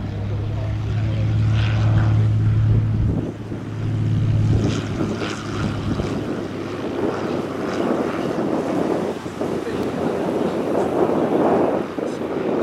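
Cessna 180's propeller and six-cylinder engine droning at a steady low pitch as it comes in to land, dropping away about five seconds in. Gusty crosswind then buffets the microphone with a rough rushing noise that builds toward the end.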